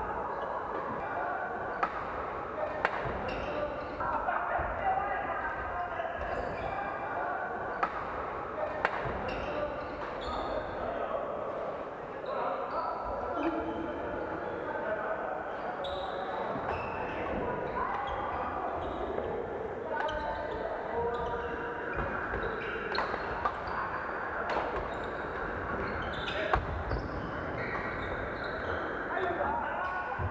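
Badminton rackets striking shuttlecocks, sharp hits at irregular intervals, with sneakers squeaking on the wooden court floor. Steady chatter of many voices runs underneath, echoing in a large sports hall.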